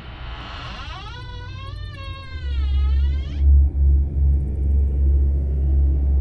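Horror film sound design: a sudden hiss-like hit, then a wavering, pitched, eerie tone that dips and climbs before cutting off, under a deep rumble that swells in about two seconds in and becomes the loudest part.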